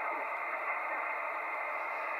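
Steady static hiss from an amateur HF transceiver's speaker on single sideband: the receiver is open on a quiet channel, and the hiss is cut off sharply above and below by its narrow receive filter.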